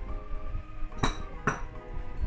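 An empty drinking glass set down on a countertop, clinking twice about half a second apart, over background music.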